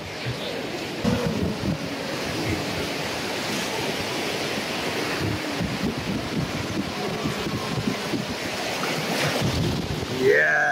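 Sea surf breaking and washing up the sand, a steady rushing noise, with wind buffeting the microphone in irregular gusts.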